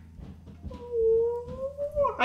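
A woman's voice holding one long exclamation that rises slightly in pitch, starting about a second in, just before she starts speaking.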